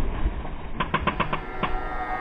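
Water and wind rushing past a Prindle 19 catamaran's hull as it sails through chop. About a third of the way in, a music track fades in over it with a quick run of clicking percussion.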